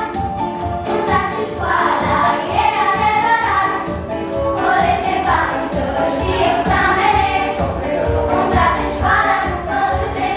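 A group of young girls singing a song together, accompanied by music with a steady beat.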